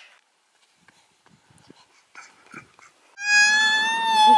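A toddler's long, loud, high-pitched yell held on one note, starting about three seconds in.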